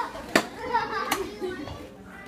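Indistinct voices of people in a room, with a sharp click about a third of a second in and a fainter one about a second in.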